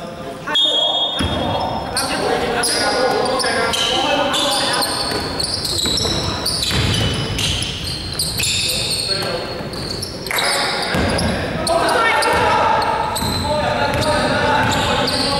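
Basketball game in a large echoing sports hall: the ball bouncing on the court floor, sneakers squeaking, and players calling out.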